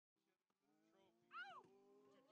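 Near silence, with one faint, short pitched sound that rises and falls about one and a half seconds in.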